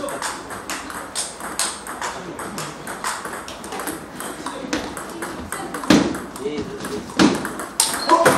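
Table tennis ball being hit back and forth in a rally: a quick, irregular run of sharp clicks from the ball striking bats and table, with two harder hits about six and seven seconds in.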